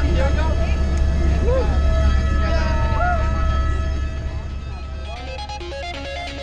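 Helicopter cabin noise, a steady low rumble, with people's voices calling out over it. About four seconds in, the rumble drops away and music comes in.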